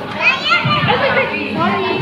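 Overlapping chatter of several voices in a busy café, among them a child's high voice.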